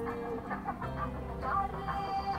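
Background music with steady held tones.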